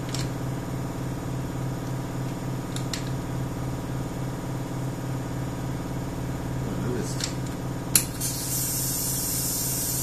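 Steady low machinery hum, then about eight seconds in a sharp click and a steady high hiss of compressed air from the booth's air line, opened at the wall regulator.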